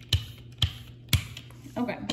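Brayer rolled back and forth across an acrylic printing plate to spread wet paint, with a sharp click about twice a second at each stroke, three times, then stopping.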